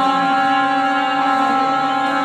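Man's folk singing in Telugu, here a long held, steady note over a continuous drone between bending sung phrases.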